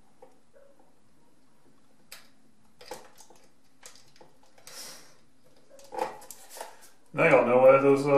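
Small clicks and rustles of a wire end being worked by hand at a metal mounting bracket. Near the end comes a loud, low drawn-out vocal sound from a man, about a second long, without words.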